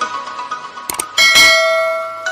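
Clicks, then a bright notification-bell ding about a second in that rings on and fades slowly, the sound effect of a subscribe-button animation, over electronic background music with a steady beat.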